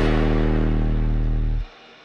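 Electronic music: a loud held low synth note with a stack of overtones stops abruptly about one and a half seconds in, leaving only a faint soft layer.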